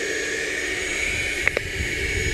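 A steady machine whine with several fixed pitches, unchanging throughout, with two short clicks about a second and a half in.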